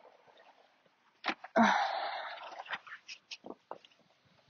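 Rustling and light ticks from fabric sun shades being folded and handled. The loudest sound is a louder breathy burst about one and a half seconds in, fading over about a second.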